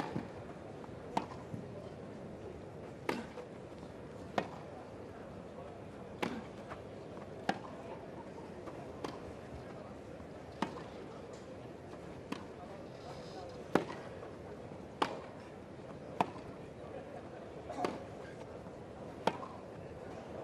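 Tennis racquets striking the ball back and forth in a long baseline rally: a sharp pock roughly every one and a half seconds, some louder and some fainter, over a low crowd murmur.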